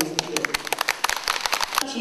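Audience applauding, a scattering of distinct handclaps at about a dozen a second that cuts off suddenly near the end.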